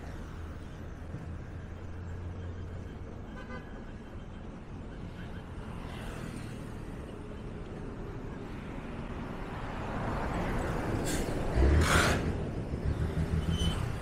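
Road traffic on a busy city road: steady rumble of passing cars and minibuses, with one vehicle passing close, building from about ten seconds in and loudest near twelve seconds.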